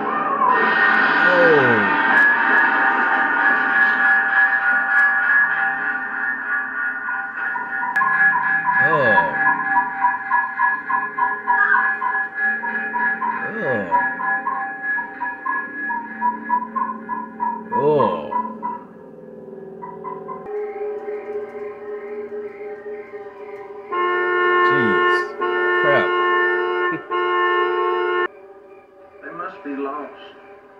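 Dissonant horror-film score of long droning held tones, cut by a steep falling swoop every few seconds. From about 24 to 28 seconds in, a louder, brighter cluster of held tones takes over, then it cuts off.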